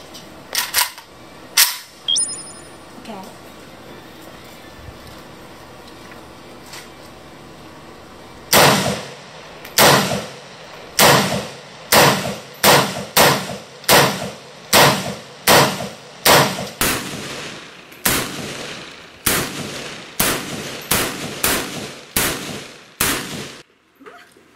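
AK-pattern rifle fired in single shots: a few shots at the start, then after a pause a long steady string of about twenty shots, roughly one to two a second.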